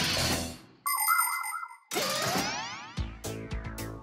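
Cartoon sound effects: a fading whoosh, then a short steady electronic tone, then a fast rising glide. Background music with a bass line comes in about three seconds in.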